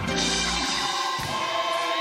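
Gospel choir singing long held notes over a band; the low bass underneath drops away a little under a second in, leaving the voices.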